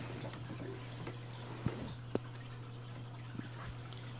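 Water trickling and dripping in a turtle tank over a steady low hum, with two sharp clicks a little before and just after the two-second mark.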